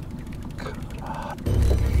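Fast, even fine ticking, then a sudden low thump and rumble about one and a half seconds in as a zander takes the jig and the rod is struck.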